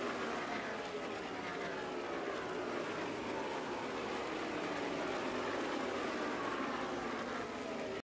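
NASCAR Cup stock cars' V8 engines running at speed on the track. Several overlapping engine notes slowly fall in pitch as the cars go past.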